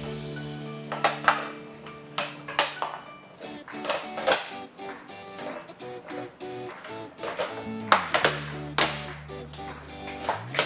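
Background music with held notes and percussive hits.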